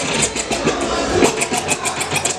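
Hip hop music from a DJ's turntable set, played loud through a hall sound system. In the second half there is a rapid run of short, sharp hits, about seven a second.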